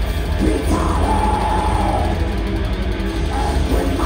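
Metal band playing live: distorted electric guitars, bass and drums, with a long held vocal from the singer starting about a second in.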